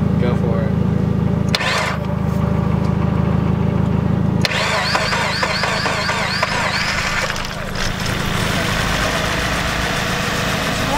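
Mazda Miata four-cylinder engine being started after its intake manifold and cleaned fuel injectors were refitted: a steady, even churning for about four and a half seconds, then an abrupt change to a rougher running sound.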